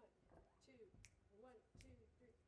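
Faint finger snaps, about three evenly spaced, counting off the tempo just before the band starts a song.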